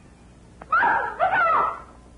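Two short, loud vocal cries in quick succession, a person's startled exclamation without clear words.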